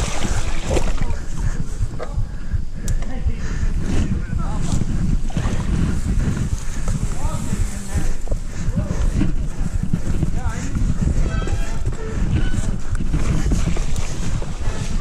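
Mountain bike riding a waterlogged, muddy trail: a steady low rumble of wind buffeting the handlebar-mounted camera's microphone, mixed with tyre and frame noise over wet ground and through puddles.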